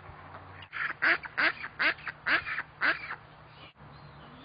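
Long-tailed duck calling: a quick run of about six loud notes starting about a second in, each sliding down in pitch, over some two seconds.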